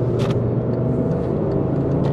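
Cabin noise of a moving Volkswagen Passat with a 2.5-litre five-cylinder engine and automatic gearbox: a steady engine hum over road and tyre noise.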